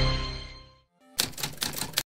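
Background music fades out, and after a brief silence a rapid run of sharp clicks begins, a typewriter-style typing sound effect, cutting off abruptly.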